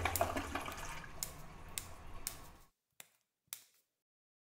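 Toilet flushing: a rush of water with a few sharp ticks over it, fading out about two and a half seconds in, followed by two faint clicks.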